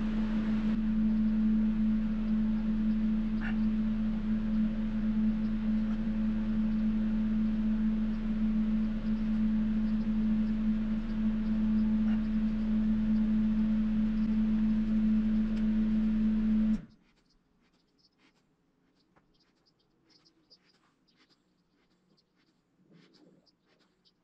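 A steady, even low hum that cuts off suddenly about 17 seconds in. After it, near silence with faint scattered ticks and scrapes of hands and a tool working modelling clay.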